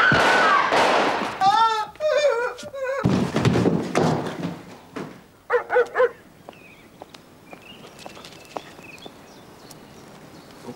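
A loud crash and commotion, then a woman screaming in short, high cries of fright. A dog barks a few times near the middle, followed by quieter background.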